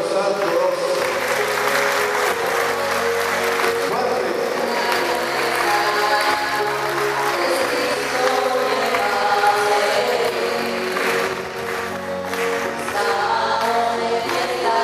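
Church choir and congregation singing a hymn with instrumental accompaniment, with hand clapping through much of it.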